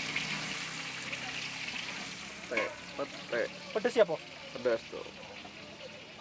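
Chillies frying in a steel wok: a steady sizzling hiss, strongest for the first couple of seconds and then easing off. Voices break in briefly from about two and a half seconds in.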